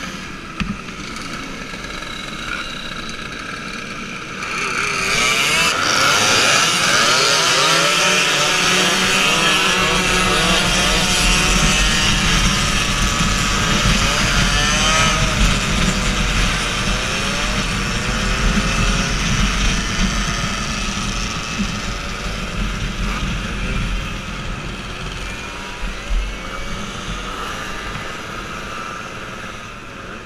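Moped engine running, its pitch climbing and falling with the throttle; it gets louder about four seconds in as the moped pulls away from a stop. Wind rumbles on the microphone at cruising speed.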